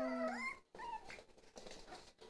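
Jack Russell Terrier puppy giving a short whine that rises in pitch during the first half second. After that there is only faint scuffling and clicking of puppies moving in the pen.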